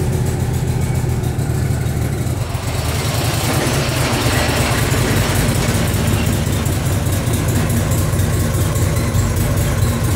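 Riding garden tractor's engine running as the tractor drives in at low speed, growing somewhat louder from about three seconds in as it comes closer.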